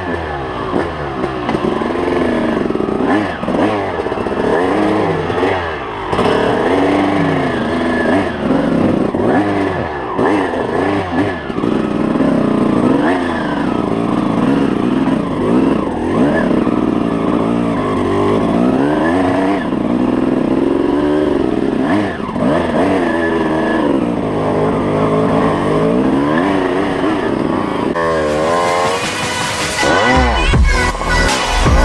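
Enduro dirt bike engine revving up and down over and over as the throttle is worked, ridden hard over rough, leaf-covered forest trail.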